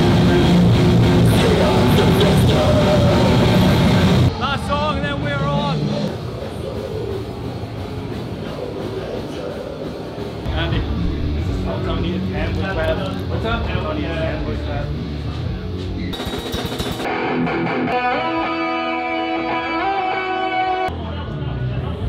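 A heavy metal band playing loud and live, with distorted electric guitars and drums; the playing cuts off about four seconds in. After that, voices chatter in the room, and near the end a single note is held steady for a few seconds.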